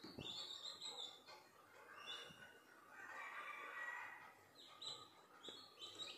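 Newly hatched chicken chicks peeping faintly: short high chirps, several in a row near the start and again near the end.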